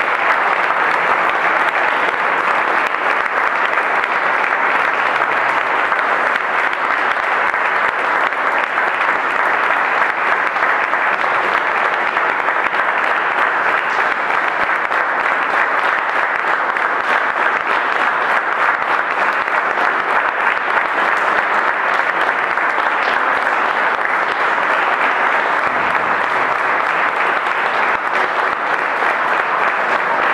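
Audience applauding, steady and unbroken throughout.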